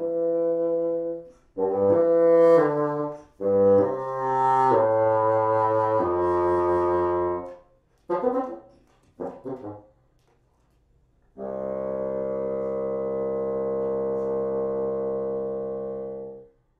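Solo bassoon playing slow, held low notes in short phrases with gaps between them, then a few short, quick notes. After a pause, one long low note is held steadily for about five seconds.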